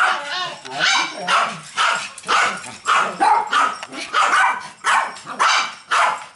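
Small dogs barking repeatedly, about two sharp barks a second.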